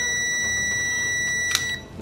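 Digital multimeter's continuity beeper giving one steady high beep, with the probes across a Nokia 1200's loudspeaker contacts. The beep shows the speaker coil is unbroken: the speaker is fine. A click comes about one and a half seconds in, and the tone cuts off shortly after.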